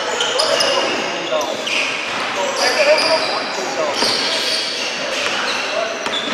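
Basketball game in a gym: indistinct voices of players and spectators echoing in a large hall, with short high squeaks from sneakers on the hardwood floor and a basketball bouncing.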